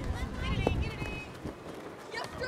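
Distant shouts and calls of players and onlookers across an open soccer field, over a low rumble that fades out about a second and a half in.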